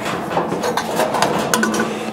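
Sheet-metal clattering and clinking from a vintage Coleman 426C camp stove, as its wire cooking grate is lifted and its steel fuel tank is taken out of the stove body, with a steady run of small metal knocks and rattles.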